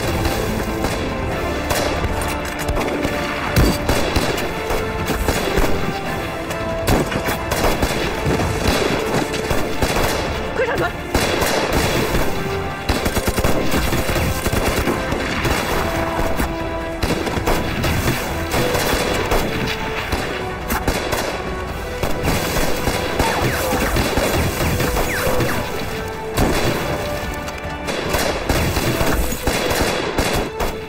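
Rapid rifle and machine-gun fire of a staged battle, shots crowding one on another, with background music playing under it.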